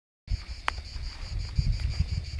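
Insects chirring steadily in a high, pulsing band, over an uneven low rumble of wind on the microphone, with one sharp click less than a second in.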